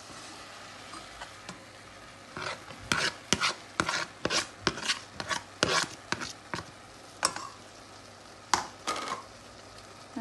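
Metal spoon scraping and knocking against a stainless steel pot as chopped onions are added and stirred into browning minced meat: an irregular run of sharp scrapes and knocks starting about two and a half seconds in and stopping near the end. Under it, a faint steady sizzle of the meat cooking.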